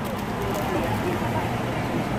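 Faint background voices over a steady low rumble and general outdoor murmur, with no distinct event standing out.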